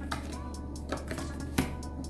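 Oracle cards being handled and drawn from the deck: a few sharp card clicks and slaps, the loudest about a second and a half in, over quiet background music.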